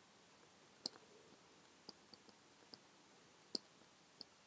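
Faint clicks and ticks of a stylus tapping on a tablet screen while handwriting. Two sharper clicks come about a second in and near the end, with lighter ticks between.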